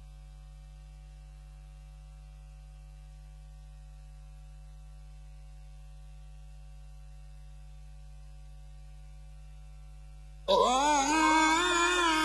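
Steady electrical hum from the sound system, then about ten seconds in a man's voice breaks in loudly, beginning a melodious Qur'an recitation (tilawah) through the microphone in long, wavering held notes.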